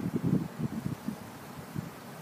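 Wind buffeting the microphone in irregular low gusts, heaviest in the first second and again briefly near the end.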